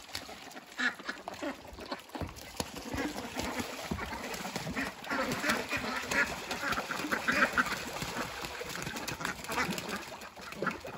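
A flock of domestic ducks quacking and splashing as they bathe in a rain puddle. The chatter grows louder and busier from about two seconds in.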